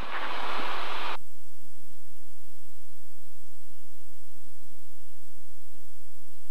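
Steady drone of a Cirrus SR20's four-cylinder piston engine and propeller heard inside the cockpit in cruise flight. A higher hiss over the drone cuts off suddenly about a second in.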